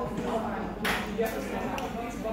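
Voices talking in a busy café, with one short, sharp sound about a second in.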